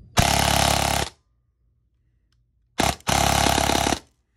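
Airsoft electric gun (AEG) with a brushless motor firing full-auto through a chronograph: a burst of about a second, then a brief short burst and another burst of about a second near the end, each a fast, even mechanical rattle of the gearbox cycling.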